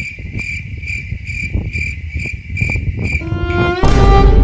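High, insect-like chirping, like a cricket, pulsing about three times a second over a low rumble. Near the end dramatic music enters, rising in steps, and ends on a loud, deep boom.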